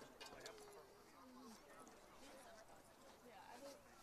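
Near silence, with faint distant voices murmuring in the background.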